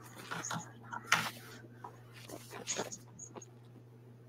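Faint scattered clicks and rustles with a few brief high squeaks over a steady low hum.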